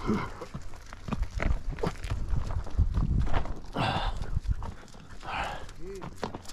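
A mule's hooves stepping on rocky desert gravel, an irregular run of knocks and crunches as it moves, with a few brief breathy rushes.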